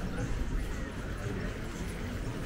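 Promenade ambience: footsteps on stone paving with faint chatter of passers-by.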